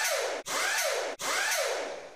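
Logo-intro sound effect: three whooshes in a row, each sweeping down in pitch, the last fading away near the end.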